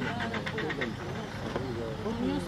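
People talking, with a steady low hum beneath the voices.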